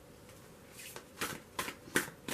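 A tarot deck being shuffled by hand: quiet at first, then about four short card snaps in the second half.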